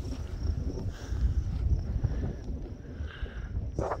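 Storm wind buffeting a phone's microphone: a steady, uneven low rumble.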